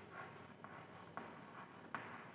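Chalk writing on a blackboard: faint, short chalk strokes and taps, about four in two seconds, as letters are written.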